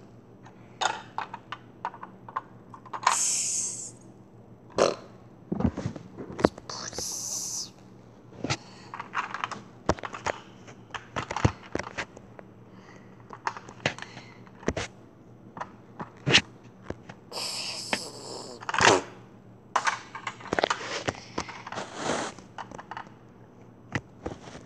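Plastic Lego bricks and minifigures clicking and tapping against a Lego baseplate in many irregular sharp clicks as they are moved about by hand. A child's breathy, hissing mouth noises and short vocal sounds come in now and then.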